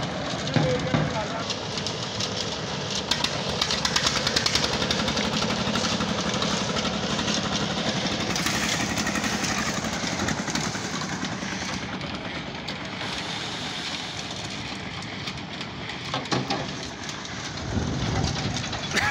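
Drum concrete mixer running steadily, with crushed stone clattering as it is tipped in and scattered knocks and rattles of the machinery. People's voices are heard over it.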